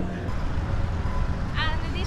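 Low, steady vehicle rumble, with a voice beginning about one and a half seconds in.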